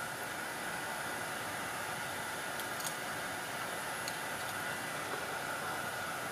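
Steady low hiss of room noise, with a few faint, light ticks of a USB cable being handled around the middle.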